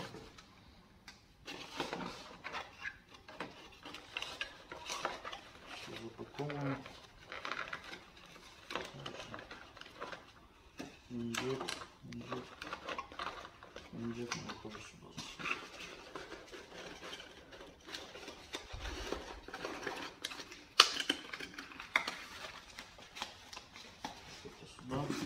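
Handling noises of packing: irregular rustling, light knocks and clicks as a soundbar's adapter, cables and plastic bags are put into a cardboard box, with one sharp knock near the end. A few brief low mutters of a voice come in among them.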